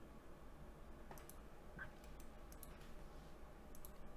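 Faint computer mouse clicks, a handful of short clicks, several in quick pairs, starting about a second in, over a low steady hum.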